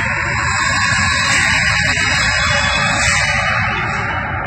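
Loud, dense, distorted rock-style music.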